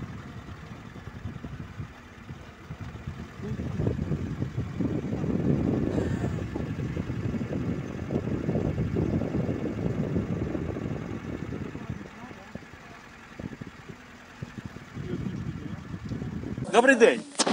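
A car driving slowly along a rough village road, with engine and tyre noise heard from inside the cabin. It grows louder a few seconds in and eases off near the end.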